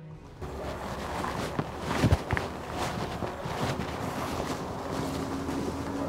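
Rustling and scuffing in dry pine-needle litter, with a few sharp knocks around two seconds in, over a steady outdoor hiss. A low steady hum comes in about four seconds in.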